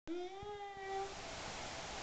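A toddler's drawn-out vocal sound: one held, slightly rising tone lasting about a second.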